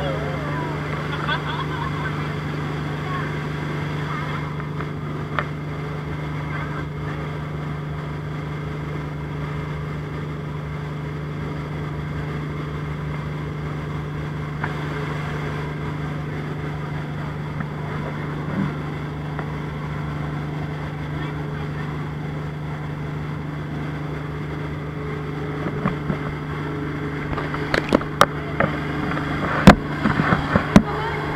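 Motorboat engine running at a steady pace with a constant low drone, over the rush of water and wind. Near the end, several sharp knocks and clatters close to the microphone.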